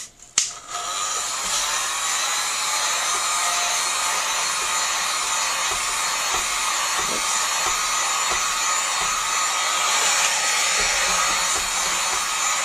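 Electric heat gun clicked on, then running steadily, blowing hot air over wet epoxy on a tumbler to warm it and bring out bubbles.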